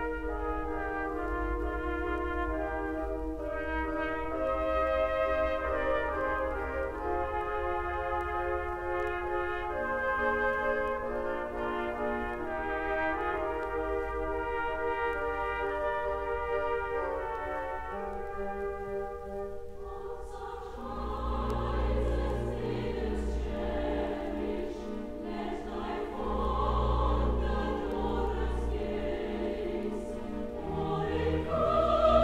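Theatre orchestra playing with prominent brass; about two-thirds of the way in, a chorus begins singing over the orchestra.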